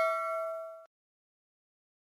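The ringing tail of a bell 'ding' sound effect for a subscribe-button notification bell: several clear tones fading, then cut off abruptly a little under a second in.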